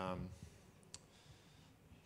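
A man's drawn-out "um" trailing off, then a pause of faint room tone broken by a single short click about a second in.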